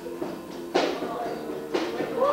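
Live band music: acoustic guitar chords ringing under a drum kit, with a sharp drum hit about once a second.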